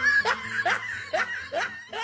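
Men laughing in a string of short giggles, about two or three a second, each rising in pitch.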